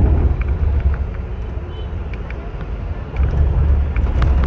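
Volvo 9600 coach on the move, its engine and road rumble heard from inside the cabin, a steady low drone that swells for about the first second and again near the end.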